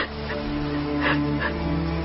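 A woman's soft sobbing, with two short catching breaths about a second in, over background film music with long held notes.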